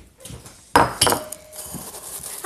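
Kitchen dishes and cutlery clattering: two sharp clinks about a second in, the second followed by a brief ringing tone.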